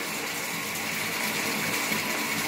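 Water running steadily from a tap into a bathtub, an even rushing hiss that holds at one level.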